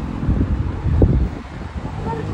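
Wind on a handheld phone's microphone: a low rumble with two stronger gusts, about half a second and a second in.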